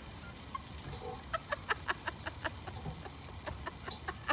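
Women's breathless, near-silent laughter: a run of short, sharp breathy pulses, about five a second, starting about a second in.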